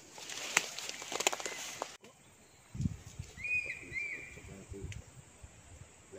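Rustling handling noise with several sharp ticks for about two seconds, which cuts off abruptly. Then come a few low thuds, and a bird gives two short arched chirps, rising and falling, in the middle.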